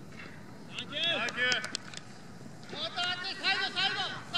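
Several people shouting short calls, with a cluster about a second in and a quick run of calls near the end.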